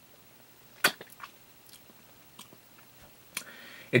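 Mouth sounds of someone tasting a hard candy lollipop: a few scattered wet lip smacks and tongue clicks, the sharpest about a second in.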